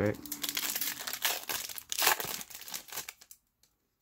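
Foil wrapper of a 2020 Donruss football card pack crinkling and tearing as it is ripped open by hand: a dense run of crackles, loudest about one and two seconds in, stopping a little after three seconds.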